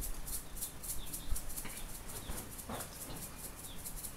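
Salt grains rattling in a small plastic shaker as it is shaken over a pan: a quick, even rattle of about three shakes a second that grows fainter in the second half.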